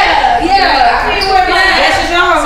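Loud voices speaking, with no clear words.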